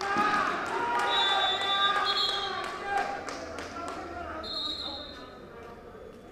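Players and spectators shouting over one another, loudest in the first three seconds, with footfalls and thumps on the court. A referee's whistle is blown three times: a blast of about a second early on, a short one right after it, and a last one near the end, as play is stopped.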